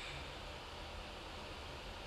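Faint steady hiss of room tone, with no distinct sound standing out.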